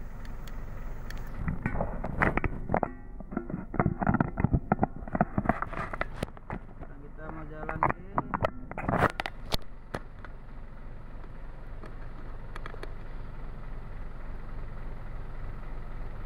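Hino truck's diesel engine idling with a steady low drone. From about two to ten seconds in, loud irregular clicks and knocks and indistinct voices sound over it.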